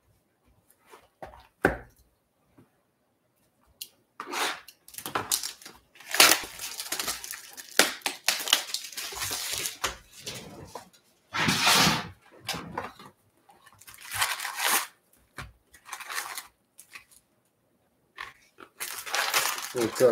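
Plastic shrink wrap being cut and torn off a sealed trading-card hobby box, in irregular crinkling and tearing bursts starting about four seconds in, followed by the cardboard box being opened and its foil card packs being handled and pulled out.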